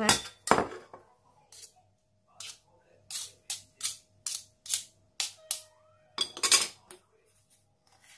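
Metal spoons clinking and scraping against a stainless steel bowl as salted mashed soybeans are stirred. There are a dozen or so sharp, irregular clicks, with a louder run of clinks about six seconds in.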